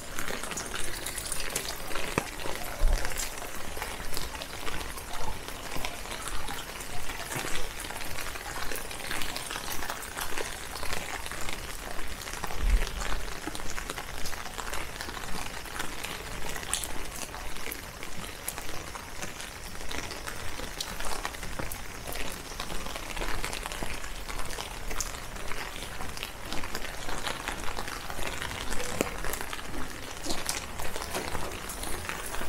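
Rain pattering steadily, a dense crackle of drop hits, over footsteps on wet pavement at a steady walking pace, about three steps every two seconds.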